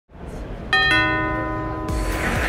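Short musical intro sting: a low swell, then two bright bell-like chime notes struck in quick succession that ring on. Near the end a wash of background noise comes in.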